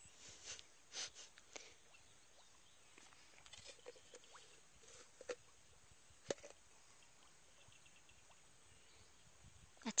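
Near silence, broken by a few faint clicks and knocks of fishing tackle being handled while a hook is baited; the sharpest click comes about six seconds in.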